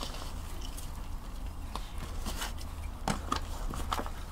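A metal hand trowel scraping and scooping damp compost out of a grow bag into a plastic tub: faint crumbly rustling and scraping, with a few small taps a little after three seconds in.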